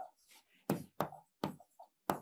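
Stylus knocking against the glass of an interactive touchscreen display while writing: a series of about four sharp, short taps, irregularly spaced.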